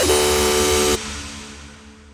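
The final sustained chord of a dark dubstep track: loud, dense synth and bass for about a second, then it cuts off suddenly and leaves a fading tail.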